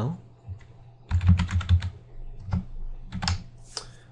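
Computer keyboard being typed on: a few short clusters of keystrokes, the busiest about a second in.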